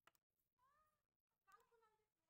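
Near silence, with two faint, brief calls that rise and then fall in pitch, about half a second in and again about a second and a half in.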